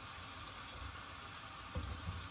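Butter and onion sizzling gently in a skillet over a gas flame: a faint, steady hiss. A soft knock near the end, as a slice of zucchini goes into the pan.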